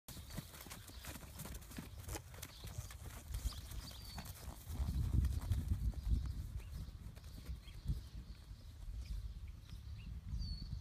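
Hoofbeats of a mare and her young foal trotting over turf and dirt: a quick patter of soft thuds through the first few seconds, thinning out later. A low rumble swells for a second or so in the middle.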